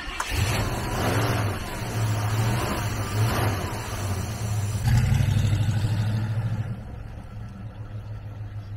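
AMC V8 engine running with the hood open, idling and then revved about five seconds in before settling back toward idle. A person laughs briefly near the start.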